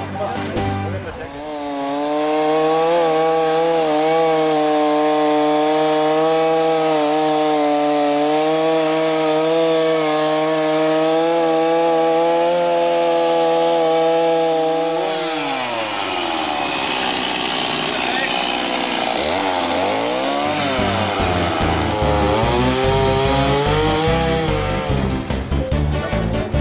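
Chainsaw cutting lengthwise into a peeled wooden log, running at a steady high speed. About 15 seconds in its pitch falls, then rises and falls several times as the saw is eased and revved in the cut, before it steadies again.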